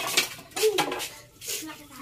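A few sharp clinks and clatters, like dishes or utensils being handled. They come close together in the first second and once more about three-quarters of the way through.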